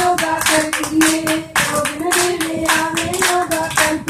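A group of women clapping hands in a steady rhythm, about four claps a second, keeping time for a Punjabi gidda, with women's voices singing a held note over the claps.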